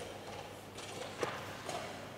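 A sharp tap at the chessboard about a second in, followed by a fainter tap shortly after.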